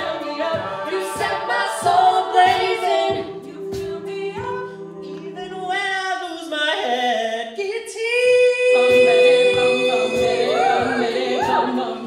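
Mixed a cappella group singing sustained harmonies over a beatboxed vocal-percussion beat. The beat drops out about six seconds in, then comes back a couple of seconds later under a louder, fuller chord.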